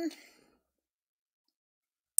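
The breathy tail of a woman's spoken greeting fading out in the first moment, then dead silence.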